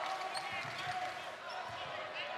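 Basketball being dribbled on a hardwood court, a few faint thumps under the steady murmur of an arena crowd.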